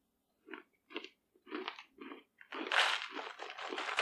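A person chewing a mouthful of crunchy meat granola made mostly of dehydrated beef, with coconut flakes and macadamia nuts. It starts as separate crunches about every half second, then turns to denser, continuous crunching from about two and a half seconds in.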